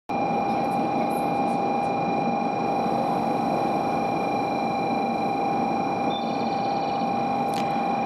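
A 500 series Shinkansen rolling slowly into a station platform, under a steady high-pitched hum that holds one pitch throughout.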